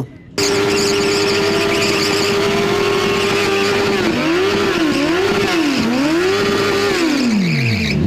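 Sport motorcycle engine held at high revs in a burnout, spinning its rear tyre on the asphalt. From about four seconds in the revs dip and climb again three times, then fall away sharply near the end.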